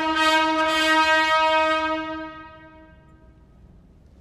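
Brass fanfare ending on a long held chord that rings on for about two seconds, then dies away in the hall's reverberation, the higher notes fading first, leaving quiet room noise.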